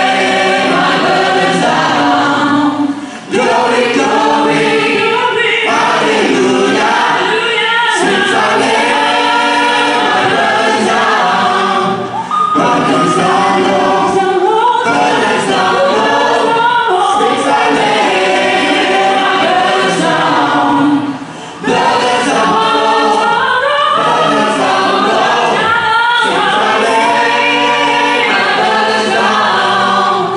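A stage cast of men's and women's voices singing together as a choir in a gospel-style song. The singing is loud and continuous, with short breaks between phrases about every nine seconds.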